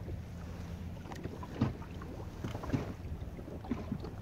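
Choppy water lapping and slapping irregularly against the hull of a small boat drifting with its motor off, over a low wind rumble on the microphone.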